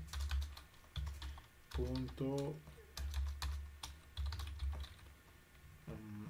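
Computer keyboard typing: irregular key clicks throughout, with a brief mumbled word about two seconds in.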